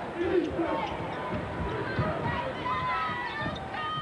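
Arena crowd noise during live college basketball play, with short squeaks from sneakers on the hardwood court in the second half.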